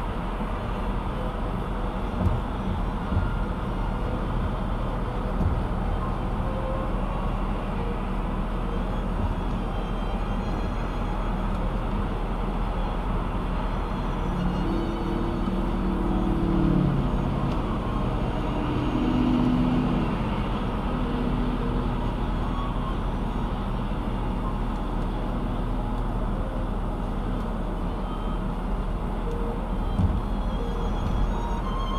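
Steady road and engine noise inside a car cruising at highway speed. A couple of sharp knocks come about two and three seconds in, and a few held low tones that step in pitch sound briefly in the middle.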